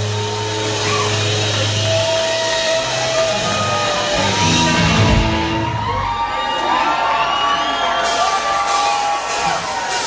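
Rock band playing live through a club PA, an electric guitar sustaining and bending long notes over a low held note that drops out about two seconds in, while the crowd whoops and cheers. Sharp drum hits start near the end.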